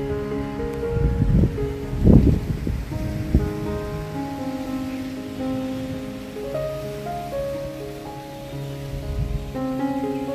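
Background music of slow, sustained notes, with gusts of strong wind rumbling on the microphone. The gusts come about one to two seconds in, once more at about three seconds, and again near the end.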